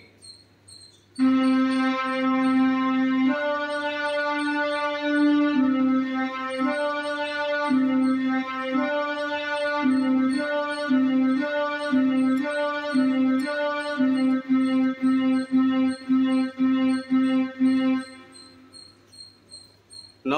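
Casio CT-X700 electronic keyboard playing a slow beginner melody on middle C and D. Long held notes give way to a run of short repeated notes near the end. A metronome set to 120 beats per minute ticks steadily throughout.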